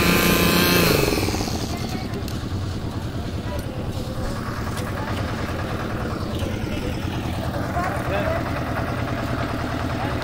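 Construction machinery engine running steadily. A strong pitched engine tone fades away about a second in, leaving a lower, rougher running rumble.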